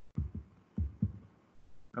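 Four soft, low thumps in two quick pairs, about half a second apart, picked up by a computer microphone.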